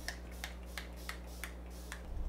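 Fine-mist pump spray bottle of ColourPop hydrating setting mist, spritzed onto the face about seven times in quick succession, each spray a short hiss.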